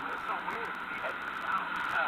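Indistinct voices over a steady hiss, heard as a recording played back through computer speakers.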